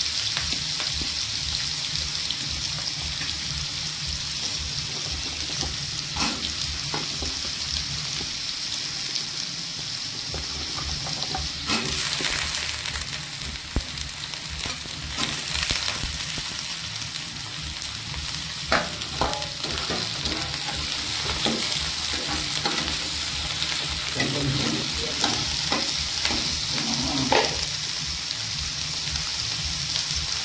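Diced potatoes and carrots, later joined by green beans, sizzling steadily in hot oil in a non-stick pan, with occasional knocks and scrapes of a spatula stirring them.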